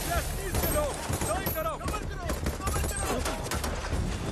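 Battle-scene film soundtrack: the deep rumble of an explosion dies away in the first half second, then scattered gunfire cracks mix with short shouted voices.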